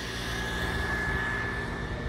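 A steady engine drone with a high whine over it, swelling slightly about a second in and then easing off.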